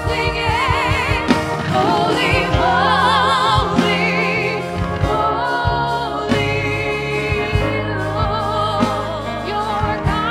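Live church worship band playing a gospel-style praise song: several singers with vibrato over electric bass, keyboard and a drum kit, with regular drum strikes.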